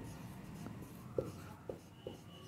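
Marker pen writing on a white board: faint scratching strokes as a word is written, with a couple of light ticks partway through.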